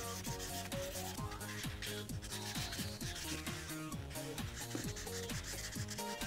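Felt-tip Prismacolor marker scrubbing back and forth on paper in quick strokes as it fills a large area with colour, over background music.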